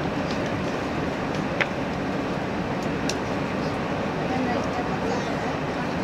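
Steady running noise of a JR Hokkaido 789-series electric express train heard from inside the carriage at speed, with a sharp click about a second and a half in.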